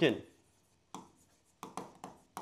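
Stylus strokes tapping and scratching on an interactive display screen as words are handwritten: one short stroke about a second in, then three quick ones near the end.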